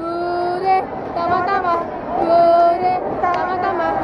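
A female voice singing a melody in long held notes.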